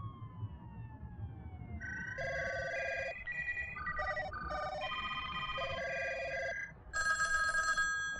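Mobile phone ringtone: an electronic melody of short, evenly pitched notes starts about two seconds in, and a steadier ring sounds near the end. Before it, a faint tone glides downward over a low rumble.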